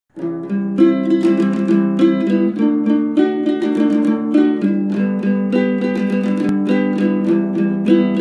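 Gitar lele, a small six-string guitar, played solo and instrumental: a quick run of plucked melody notes over ringing chords.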